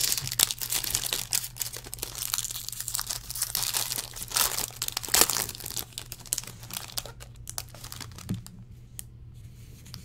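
Cellophane wrapping and a foil card pack crinkling and tearing as they are pulled open by hand, a dense crackle that thins out after about seven seconds. A steady low electrical hum runs underneath.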